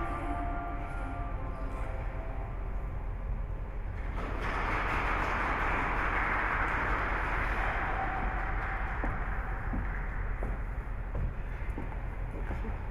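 The skating program's music fades out, and about four seconds in an audience breaks into steady applause that goes on until near the end.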